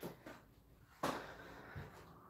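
Faint footsteps and handling noise as a netball is put down, with a soft knock about a second in that tails off.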